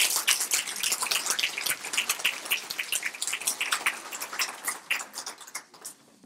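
Audience applauding, a room full of people clapping, thinning out and fading near the end.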